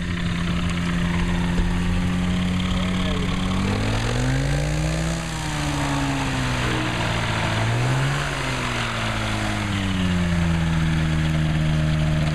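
Rotax 582 two-stroke twin engine and propeller of an Avid Flyer light aircraft running at low power while it taxis on grass. The engine speed rises about four seconds in, drops back, rises again about eight seconds in, then settles to a steady low speed.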